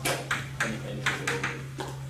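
Chalk tapping and scratching on a blackboard as a heading is written: a quick, irregular series of short strokes over a steady low hum.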